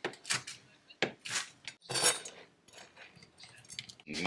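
Kitchen knife chopping crispy bacon on a chopping board: several sharp cuts in the first half, the loudest about two seconds in, then faint small clicks.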